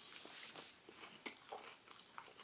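Faint biting and chewing of a Burger King Big Fish sandwich with a crispy fried fish fillet, with a few soft crunches and mouth clicks.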